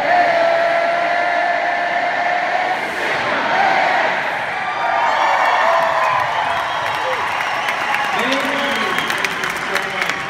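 Large arena crowd shouting and cheering at full volume. It starts suddenly with one long held yell, then breaks into a mass of cheers and whoops.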